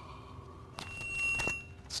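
A short, steady, high beep-like tone lasting well under a second, starting and stopping with a click.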